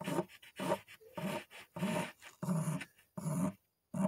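White coloring pencil sketching on a black canvas: a run of short scratching strokes, about two or three a second, with brief gaps between them.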